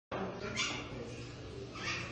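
Hyacinth macaw making two short vocal sounds, about half a second in and again near the end.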